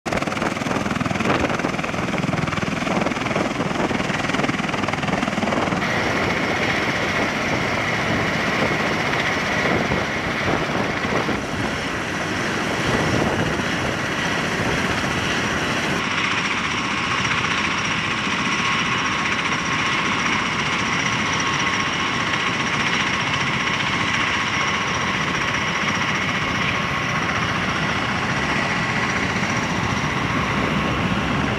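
MV-22 Osprey tiltrotors running on the ground: a steady, loud rush of rotor and turboshaft engine noise with a high, even turbine whine. The sound changes character about six seconds in and again just past halfway, where the whine stands out more.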